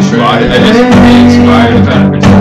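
A guitar being played with a man singing the melody over it, loud and close.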